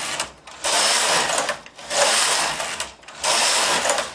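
Carriage of a Studio 860 mid-gauge knitting machine pushed back and forth across the needle bed, knitting rows: one pass ends just after the start, then three more follow, each about a second long with short breaks as it reverses, the last stopping at the end.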